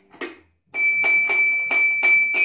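Toy xylophone's metal bars struck by a small child: one note, a brief pause, then a quick run of strikes about four a second, each note ringing on.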